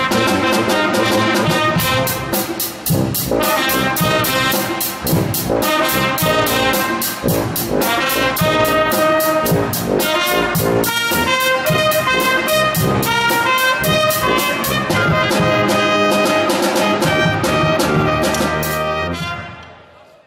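School pep band playing: tuba and trumpets with woodwinds over snare drum, cymbal and bass drum beating a steady pulse of about three strokes a second. The music fades out near the end.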